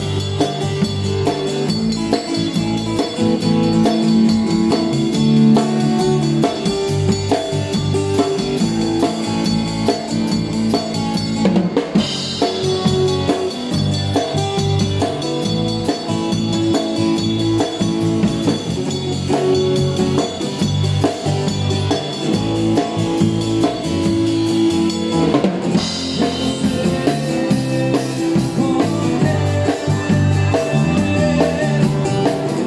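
Live rock band playing an instrumental passage: an acoustic guitar strummed over a drum kit and a steady bass line.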